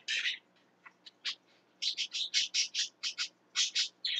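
Quick, short, high chirps from a bird, a few scattered at first and then a fast run of about five a second through the second half.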